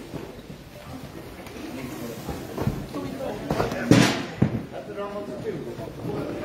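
Cardboard boxes set down onto a concrete floor: two thuds about half a second apart, around four seconds in, over men's voices chatting in a large room.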